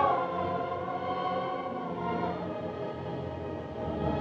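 Orchestral film score with a wordless choir: a swelling chord held for about two seconds, then softer sustained tones.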